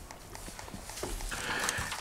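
A few faint clicks and knocks over quiet room tone at a table.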